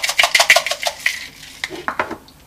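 Small spice container being worked over a pot to dispense nutmeg: a quick, even run of ticks, about eight to ten a second, thinning out after about a second into a few scattered ticks.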